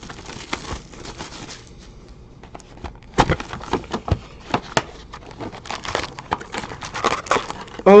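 Plastic shrink wrap crinkling and tearing as it is stripped from a sealed trading card box, then cardboard handled as the box is opened: a scatter of irregular crackles and sharp clicks.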